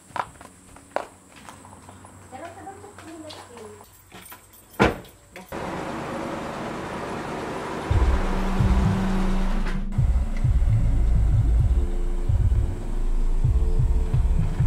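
A sharp thump about five seconds in, then a small hatchback's engine running close by, with gusts of wind hitting the microphone from about eight seconds.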